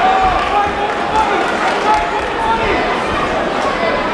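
Crowd of boxing spectators shouting and calling out over one another, many voices at once at a steady, loud level.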